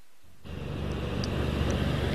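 Outdoor street noise at a live roadside location: a steady low rumble of traffic with a hiss over it, fading up about half a second in after a brief hush.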